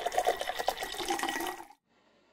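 Water poured from a stainless steel bottle into an electric kettle, splashing and gurgling, then cutting off suddenly shortly before the end.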